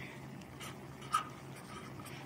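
Felt-tip marker writing on paper in a few short strokes, the loudest about a second in.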